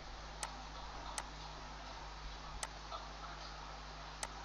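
Computer mouse clicking: a few single, sharp clicks spaced irregularly over a faint steady hiss and low hum.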